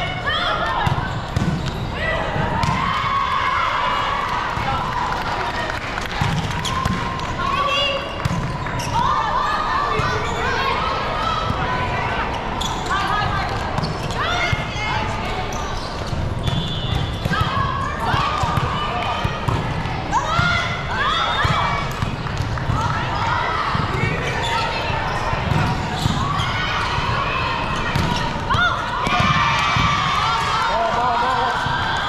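Indoor volleyball play in a large hall: players calling out and shouting, sharp ball hits, and shoes squeaking on the court.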